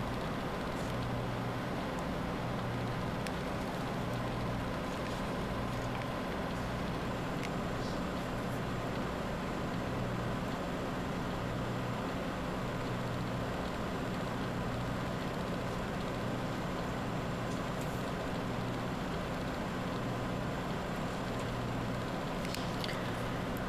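A steady low hum over a constant hiss, its lowest part wavering every second or two.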